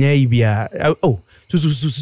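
A man's voice speaking Twi in a radio drama, over a thin, steady, high-pitched drone, with a short hiss near the end.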